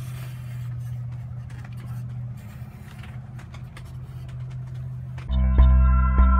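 Felt-tip marker scratching across foam board in short strokes, over a steady low hum. About five seconds in, loud music with a steady beat cuts in.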